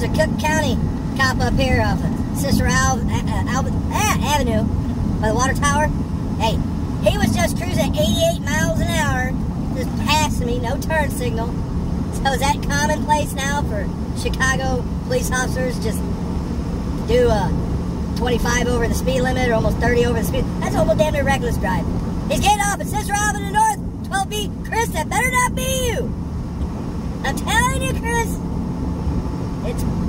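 Steady engine and road drone inside a semi-truck cab at highway speed, with a person's voice over it throughout.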